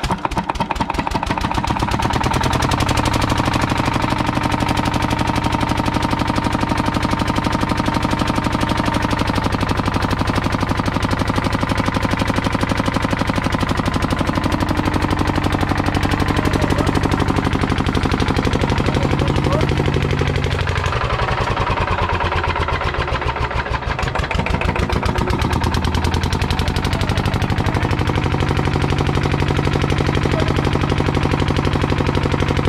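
Small single-cylinder stationary diesel engine driving a water pump, catching right at the start after intermittent cranking and then running loud and steady with a fast, even knocking beat. Its level dips briefly about three-quarters of the way through, then recovers.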